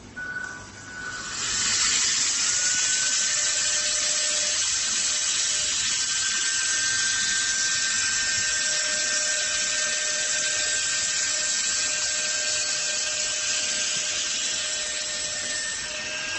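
Trapom Pro handheld brushless-motor vacuum pump sucking the air out of a vacuum storage bag through its valve: it starts up about a second in and then runs steadily, a high whine over a loud rush of air.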